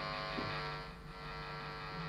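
Behringer HA-20R guitar combo amp idling on its distortion channel with nothing being played: a steady mains hum and buzz with a hiss, starting suddenly as the channel is switched in.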